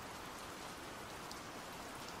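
Faint, steady rain falling: a background rain ambience with no distinct drops or thunder.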